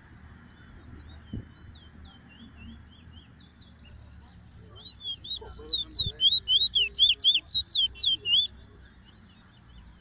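Trini bullfinch singing: a run of quick whistled notes that sweep up and down, loud for about three and a half seconds from halfway in, after softer scattered chirps. A single knock about a second in.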